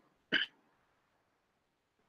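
A single brief human vocal sound near the start, and otherwise near silence.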